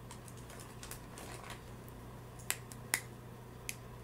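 Small clicks and taps of makeup containers being handled, with three sharper clicks in the second half such as a round powder compact case makes when it is picked up and opened.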